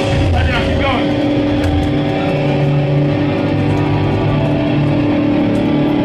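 Hardcore punk band playing live: loud, distorted electric guitar and bass holding droning notes, with a few quick squealing pitch slides in the first second.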